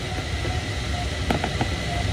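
Steady rush of airflow heard inside a glider cockpit in flight, with a few sharp clicks about a second in.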